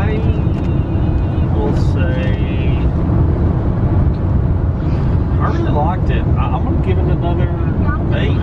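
Steady road and engine noise heard from inside a moving minivan's cabin, with muffled voices in the background.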